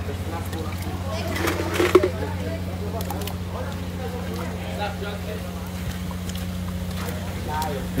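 Faint voices in the background over a steady low hum, with one short tap a little under two seconds in.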